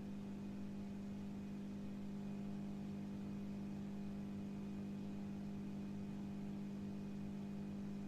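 Steady electrical hum with a strong low tone and a row of evenly spaced overtones, unchanging throughout, over a faint hiss.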